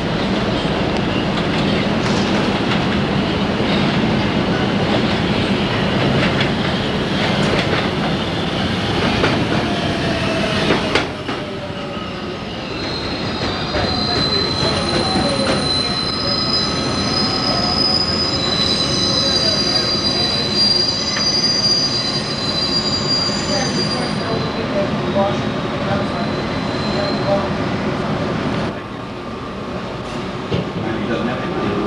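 Kawasaki R110A subway train running on its rails with a dense, steady rumble. About a third of the way in, the sound changes to the inside of the car, where high steady wheel squeals ring over the running noise for about ten seconds. The sound drops near the end.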